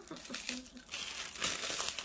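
Thin plastic packaging crinkling as it is handled, getting louder about halfway through, while a nail brush is worked back into its sleeve.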